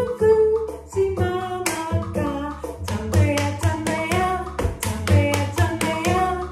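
A woman singing a Tanzanian action song over an instrumental accompaniment with a steady beat, with body percussion from her hands (rubbing, claps and slaps) adding sharp clicks in rhythm.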